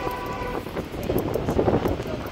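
A horn sounding one steady note with several overtones, which cuts off about half a second in; outdoor noise follows.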